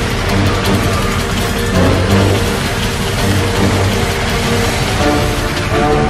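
Commercial soundtrack music with a strong, steady bass.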